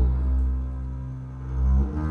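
Double bass holding one long, low bowed note that fades and then swells again near the end, moving to another note as it closes.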